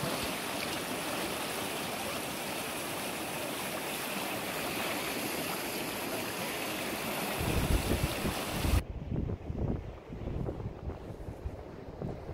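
Silty glacial meltwater river rushing steadily over gravel. From about seven seconds in, wind buffets the microphone with low rumbling gusts. Near nine seconds the water sound cuts off suddenly, leaving only the wind rumble.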